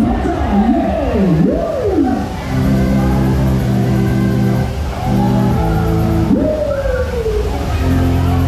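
Loud fairground ride music over the ride's sound system: swooping pitch glides at first, then held chords over a deep bass from about two and a half seconds in, with another falling glide near the end.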